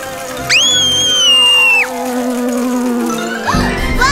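Cartoon bee-buzzing sound effects over children's background music: a high held whistle-like tone for about a second and a half, then a lower buzz that slides down in pitch.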